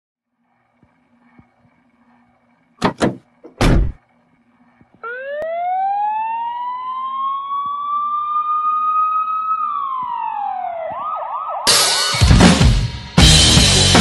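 A few sharp, loud hits, then a siren winds up in pitch to a steady wail and winds back down. Near the end, loud rock music with a full drum kit comes in.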